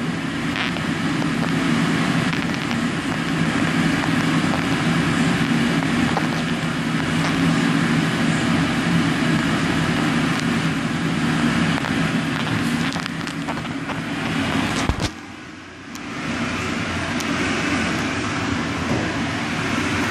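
Steady machine hum, broken by a sharp click about fifteen seconds in, after which it drops away for about a second before coming back.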